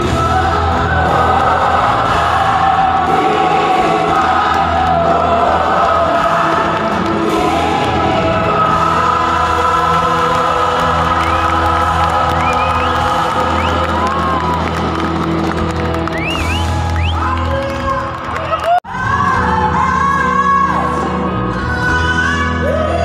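Live band music with a singer, played through a large outdoor stage PA and recorded from the audience. Near the end the sound cuts out for a moment and a different song with another singer picks up.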